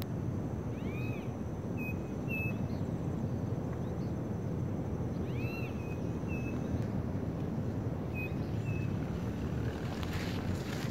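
Outdoor rural ambience: a steady low background rumble, with a bird calling. An arched two-part call comes about a second in and again about five seconds in, with short chirps after each.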